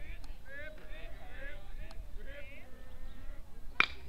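Faint background voices, then near the end a baseball bat strikes a pitched ball once, sharply.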